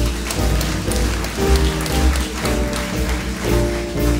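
Jazz big band playing, the clarinet and saxophone section holding chords over double bass and piano.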